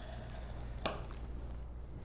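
A bone folder pressing paper along a folio spine, with one light tap a little under a second in, over a steady low hum.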